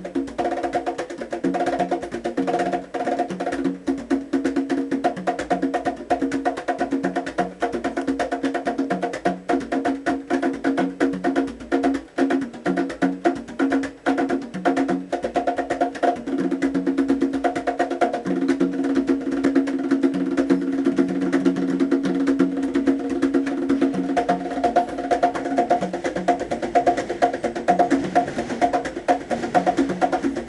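Conga drums played by hand in a fast, unbroken rhythm of sharp strokes.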